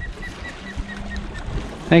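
Low rumble of wind and water around a small fishing boat on open water, with a faint row of short, high peeps repeating quickly through the first second and a half.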